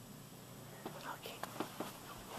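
A person whispering softly, a cluster of short whispered sounds in the second half.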